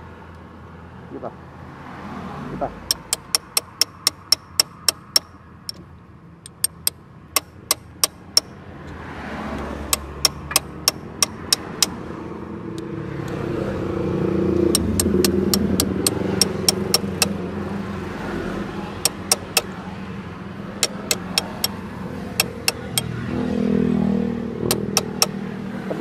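Sharp metallic clicks of a wrench being worked on a motorcycle's rear sprocket nuts, coming in runs of about four a second. A passing motor vehicle swells up in the middle and another near the end.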